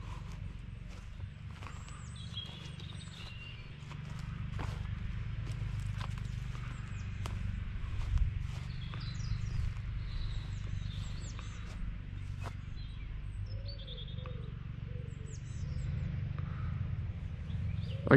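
A lawn mower's engine running steadily in the background, a low, even din, with birds chirping and calling over it and a few sharp ticks.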